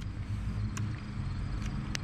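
An engine idling steadily at a low, even pitch, with a few faint ticks.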